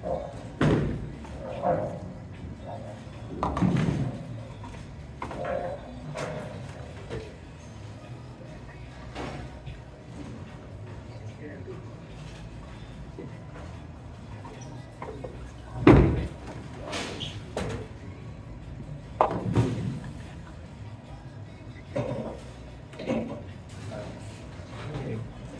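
Ten-pin bowling alley: balls rolling and pins crashing in several sharp bursts, the loudest about two-thirds of the way through, over a steady background of voices and music.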